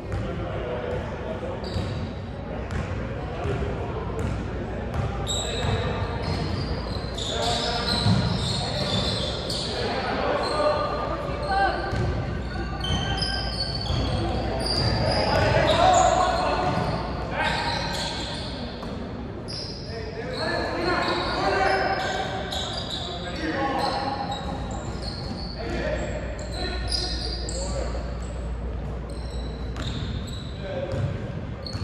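A basketball being dribbled on a hardwood gym court during a game, with indistinct shouts and chatter from players and spectators echoing around the large gymnasium.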